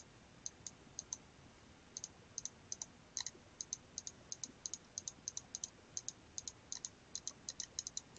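Computer mouse button clicking faintly and repeatedly, in close pairs of press and release, a few pairs a second, as dashes are drawn onto a scatter plot.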